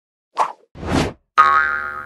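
Animated-logo sound effects: a short pop, a swelling whoosh, then a sudden bright ringing tone, the loudest of the three, that fades out slowly.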